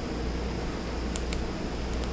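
Steady low background hum in a small room, with two faint light clicks a little after a second in from hands handling a short piece of plastic hose and trimmer line.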